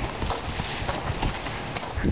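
Footsteps on a gravel garden path: irregular low thuds over a steady crunchy hiss.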